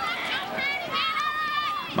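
High-pitched voices shouting and calling out, with one long held call starting about a second in.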